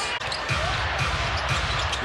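Arena crowd noise during a live basketball game, with the low thuds of a basketball being dribbled on the hardwood starting about half a second in.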